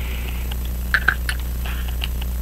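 Steady low electrical hum, with a few light clicks about a second in from small pocket-watch parts being handled.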